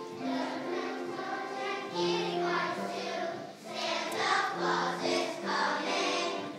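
A choir of second-grade children singing together, in phrases of held notes with short breaks between them.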